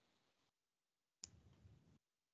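Near silence, broken by one faint click a little over a second in, followed by a brief low hum.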